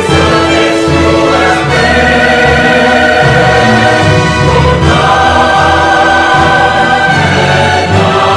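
A choir singing a hymn with instrumental accompaniment, in long held chords that change a couple of times.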